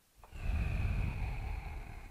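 A man's long exhale into a headset microphone, the breath blowing on the mic and lasting about two seconds.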